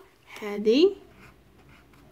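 A short spoken phrase, then faint scratching of a pencil on a textbook page.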